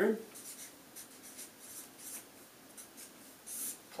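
Felt-tip marker writing numbers on flip-chart paper: a series of faint, short scratchy strokes, with a longer stroke near the end.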